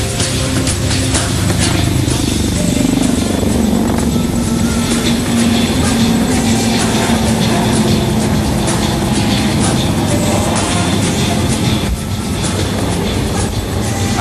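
HAL Dhruv helicopters flying past low and close, rotors and turbine engines running in a loud, steady roar, with a brief dip in loudness near the end.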